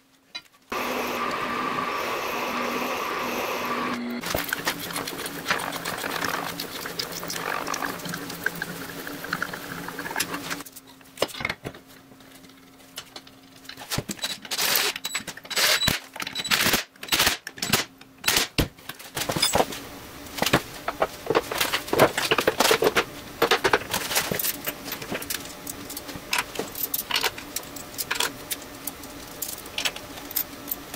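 Metal parts and hand tools handled on a workbench: a steady whirring hum for the first few seconds, then, in the second half, a run of irregular clicks and knocks of metal on metal.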